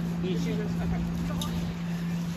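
A steady low machine hum runs on without change, under faint, scattered voices of young people calling out in the distance.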